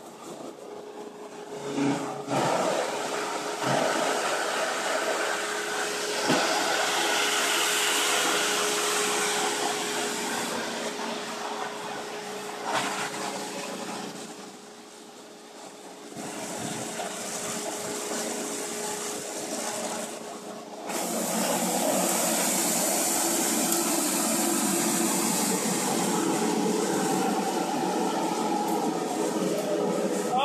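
Electric EPS foam shredder (Enstyro machine) running, a steady motor noise with a constant hum under it. The noise comes up about two seconds in, sags briefly about halfway through and rises again about two-thirds of the way through.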